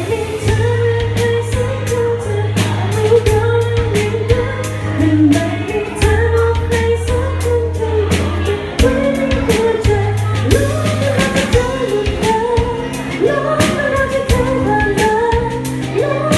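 Live band playing a pop song: a woman singing into a microphone over long held bass notes and a drum kit keeping a steady beat.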